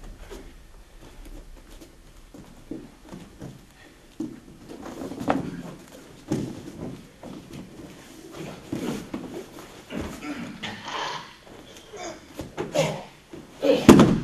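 Bare feet shuffling and thudding on a padded mat, with scattered knocks of bodies in contact; the loudest thud comes near the end as one person is taken down onto the mat.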